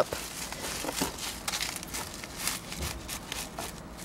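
A flexible plastic plant pot being squeezed by hand to loosen the gritty soil and root ball, giving faint, irregular crinkling and crackling.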